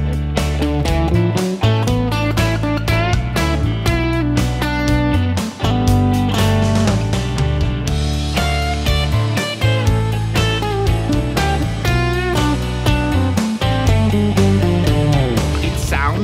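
Electric guitar playing D major pentatonic and then D minor pentatonic lines over a backing track with drums and bass.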